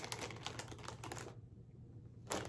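A plastic snack bag crinkling as it is shaken, a quick run of crackles that dies away about halfway through.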